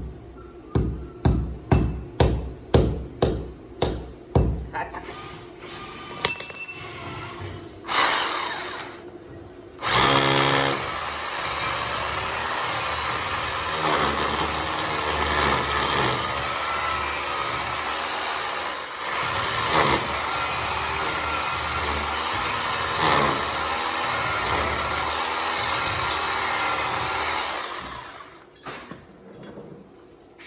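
A hammer striking a small marker held against a plastered wall, about two blows a second, stopping after about four seconds. A few seconds later an electric drill starts and bores steadily into the masonry wall, cutting off shortly before the end.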